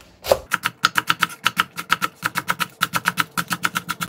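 Kitchen knife slicing a Korean green onion (daepa) on a wooden cutting board: a rapid, even run of blade strikes on the board that starts about half a second in.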